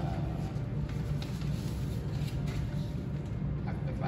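A steady low hum of background noise, with no speech.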